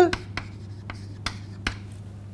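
Chalk writing on a chalkboard: several sharp taps and short scratches of the chalk as a word is written.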